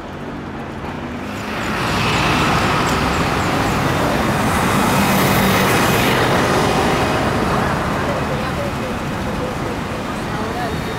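Street traffic: a passing vehicle's noise swells about a second and a half in, is loudest around the middle, and eases off near the end.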